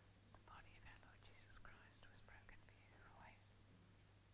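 Faint whispered speech, a few breathy words running through most of the moment, over a steady low hum in an otherwise near-silent room.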